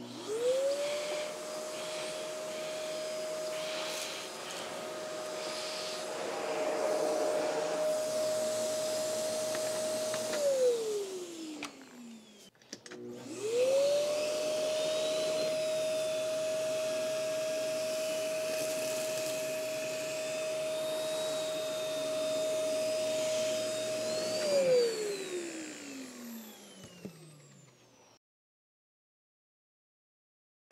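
Straight-suction canister vacuum cleaner switched on twice while a floor nozzle is pushed over low-pile carpet. Each time the motor spins up in about a second to a steady high whine, runs for about ten seconds, then is switched off and winds down in a falling whine. The first run is with its included floor nozzle and the second with a TK-286 turbo nozzle.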